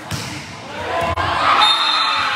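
Volleyball hits echoing in a gymnasium: a sharp smack just after the start and another about a second later. Spectators' voices swell after the second hit, and a brief high whistle sounds near the end.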